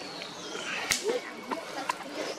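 A single sharp snap about a second in and a lighter click near the end, over faint background voices.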